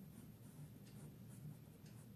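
Faint scratching of a ballpoint pen writing a word by hand on notebook paper.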